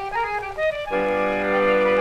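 Solo accordion played back from a 78 rpm record: a quick run of single notes, then about a second in a full held chord over a low bass note.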